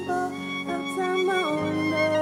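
Violin solo in a live Afro-soul band: a bowed melody that slides between notes, over sustained bass and keyboard notes.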